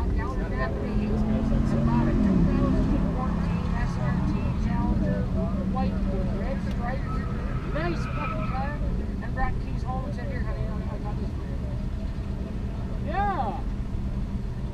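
Car engines idling in the drag-strip staging line. One engine revs and falls back about two seconds in, under steady crowd chatter.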